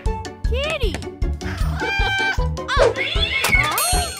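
Cartoon cat meowing, a rising-and-falling call early on and more gliding calls near the end, over children's background music with a steady beat.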